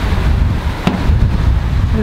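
Squall wind buffeting the microphone in a dense, loud low rumble over the rush of rain and breaking waves, with a single short click about a second in.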